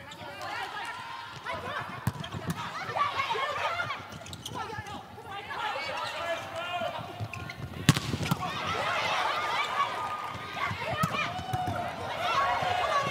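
Players' shouts and crowd voices in a volleyball arena during a rally, broken by a few sharp smacks of the ball being hit. The loudest smack comes about eight seconds in.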